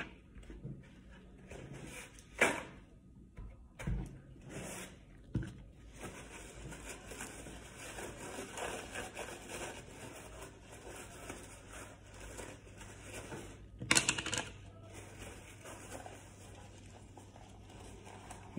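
Paper towel rubbing and rustling as small plastic containers are wiped down with alcohol, with a few short, sharp handling sounds, the loudest about fourteen seconds in.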